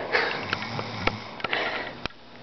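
A sleeping man snoring: two rough, sniff-like breaths through the nose about a second and a half apart, with a few light clicks between them.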